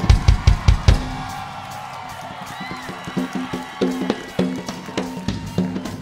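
Rock drum kit played live in a drum solo. It opens with a fast run of bass drum strokes, about five a second, for the first second. Then comes a quieter stretch of ringing cymbals, and scattered tom and snare hits pick up again about four seconds in.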